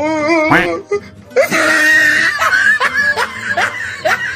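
Laughter over comedic background music. A wavering laugh comes in the first second, and short rising musical sweeps follow through the rest.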